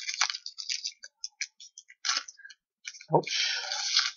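A Magic: The Gathering booster pack's foil wrapper crinkling and crackling as it is torn open by hand: dense crackling at first, then scattered small clicks, and more crinkling near the end.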